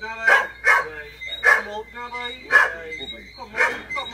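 A dog barking in short single barks, about five of them spread over the few seconds, with a man's voice talking between the barks.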